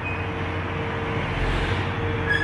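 Large farm tractor's diesel engine idling steadily, a constant low hum with a faint steady whine over it.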